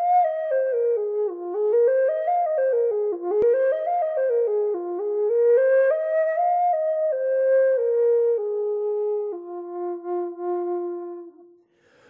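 Russ Wolf F-minor Native American flute in Taos Pueblo style playing the basic pentatonic minor scale, running up and down it in clear steps several times. It then steps slowly down and holds the lowest note for about two seconds before fading out near the end.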